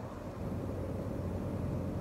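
Steady low hum with a soft, even rushing noise: the background room tone of a hall with the speech paused, picked up through the microphone.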